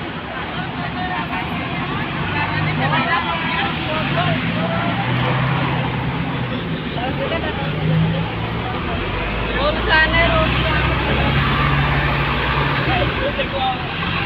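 Busy street: crowd chatter and scattered voices over the steady hum of bus engines running nearby, with a deeper engine rumble from about nine seconds in until near the end.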